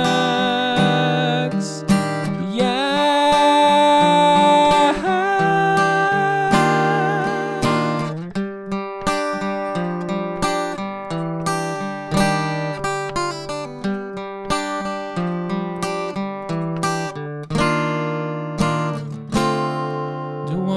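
Yamaha acoustic guitar strummed in a steady rhythm. For about the first eight seconds a man's voice holds long wordless notes with vibrato over it, then the guitar carries on alone.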